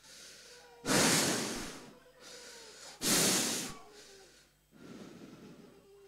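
Forceful breaths blown close into a handheld microphone: three rushing exhalations about two seconds apart, the third softer.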